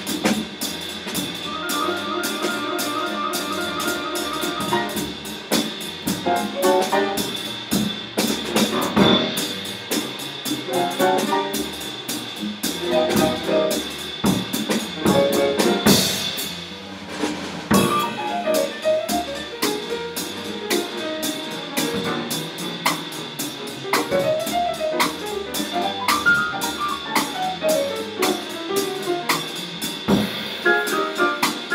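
Jazz piano trio playing live: piano, bass and drum kit, with busy drumming and cymbals under moving piano lines. A cymbal crash about halfway through is followed by a brief dip in volume.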